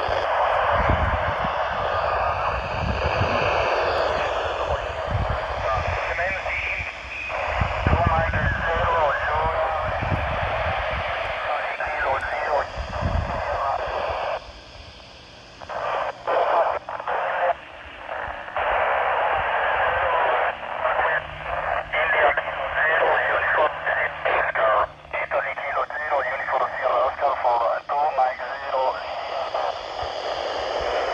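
Voices of amateur radio stations coming out of a Yaesu FT-470 handheld's speaker, received through the AO-91 FM satellite: thin, tinny speech in FM hiss that drops out about halfway through and then breaks up in short gaps as stations key up and unkey. Low thuds come through in the first half.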